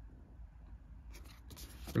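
Faint scratchy rustling of fingers rubbing and sliding on a cardboard game box as it is turned over in the hands, starting about halfway through after a quiet start.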